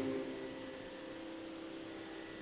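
The end of the accompanied music dies away at the start. After that, a faint steady drone of a few held tones continues on its own.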